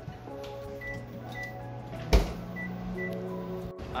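Background music over a microwave oven being used: a few short, high beeps from its keypad and a single thud about two seconds in, then a low hum until a sudden cut.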